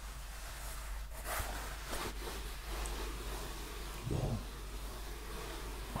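Hands rubbing and brushing over the felt of a stiff top hat held close to the microphone, a few soft rustles, with a brief low sound about four seconds in.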